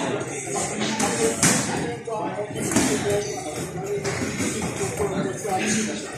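Sparring-gym ambience: a few scattered thuds of gloved punches and feet on the floor mats, over faint background voices.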